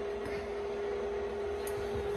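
A steady hum at one pitch over low room noise, with a faint tick near the end.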